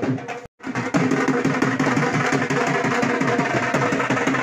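Dhol beaten in a fast, steady rhythm. The sound drops out briefly about half a second in, then the drumming carries on.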